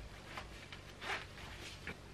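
Faint rasps of a jeans fly zip being done up, a few short strokes.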